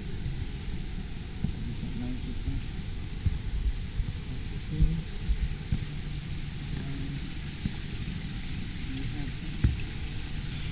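Steady splashing of a small fountain in an indoor pond, over a low indoor rumble with occasional bumps and faint voices in the background.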